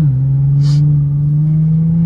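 Infiniti G35x's 3.5-litre V6 heard from inside the cabin, accelerating. The engine note dips as the automatic gearbox upshifts right at the start, then climbs steadily as revs build in the next gear.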